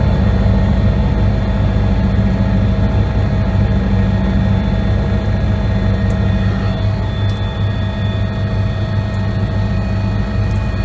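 Helicopter turbine engine and rotor heard from inside the cabin while lifting off and climbing: a loud, steady low drone with a steady whine above it, which shifts slightly in pitch about two-thirds of the way through.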